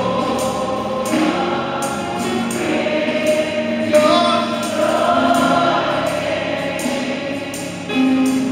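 Gospel worship song sung by a choir or congregation with a lead singer on microphone, drawn-out held notes over electric keyboard and a regular beat of sharp percussion strikes.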